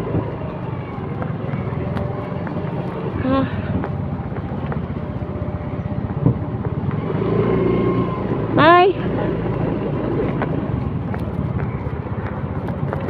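Motor scooter engine running at low speed, a steady low drone. A short rising vocal sound comes about three seconds in, and a louder one near nine seconds.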